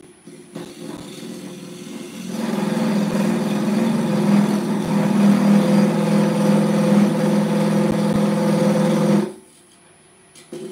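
A square carbide cutter cutting into the face of a wooden blank spinning on a wood lathe. The loud, steady buzzing cut starts about two seconds in and stops abruptly about nine seconds in, leaving the lathe's faint running hum.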